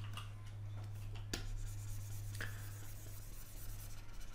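Pen stylus tapping and scratching on a graphics tablet, with a few sharp clicks, the sharpest about a second in, over a steady low hum.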